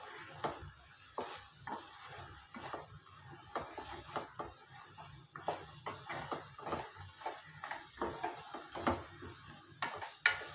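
Wooden spatula stirring thick mutton roast in a metal kadai, knocking and scraping against the pan in irregular strokes about twice a second.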